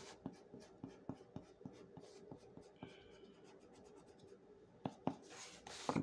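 Block eraser rubbing pencil lines off drawing paper in short, quick, faint strokes, busiest in the first couple of seconds, with a couple of louder knocks about five seconds in.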